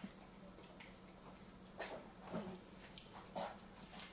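Quiet room background: a steady low hum with a few short, faint sounds about two, two and a half and three and a half seconds in.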